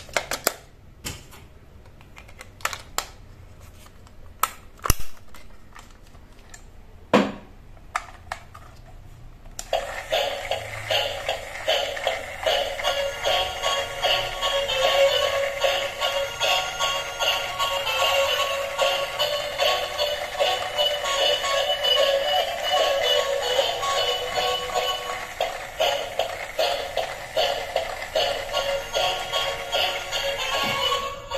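A few sharp plastic clicks as a battery-operated toy dolphin is handled. About ten seconds in, the toy switches on and plays its tinny electronic tune continuously, with a quick pulsing patter.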